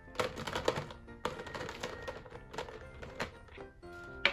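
Background music with small plastic figure counters clattering and clicking in a clear plastic jar as they are rummaged through and picked out, the clatter busiest in the first second and a half.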